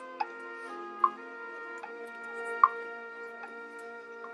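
Marching band music played softly: sustained, held chords that shift every second or so, with a few sharp, bright struck notes ringing briefly on top, the loudest about a second in and past the middle.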